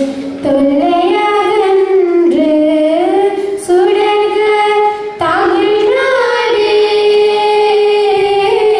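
Two girls singing together into microphones, holding long notes that slide up and down between pitches, with short breaths between phrases.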